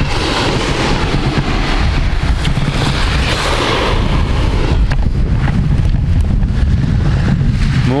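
Wind buffeting the camera microphone: a steady low rumble with hiss, broken by a few soft knocks as the camera is handled against clothing.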